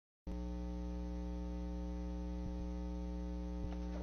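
Steady electrical mains hum with many overtones on the audio line, starting abruptly just after the beginning, with a couple of faint ticks near the end.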